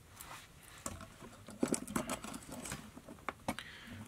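Small scratches and sharp light clicks of fly-tying tools being handled at the vise, a Velcro dubbing brush among them, mostly between about one and three and a half seconds in.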